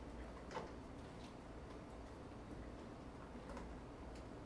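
Library reading room ambience: a low steady hum with a few faint, scattered clicks and taps, the clearest about half a second in.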